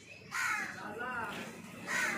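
Crows cawing, starting about a third of a second in, mixed with people's voices.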